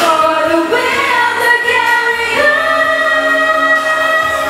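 A song sung by female voices, the second half held on one long sustained note.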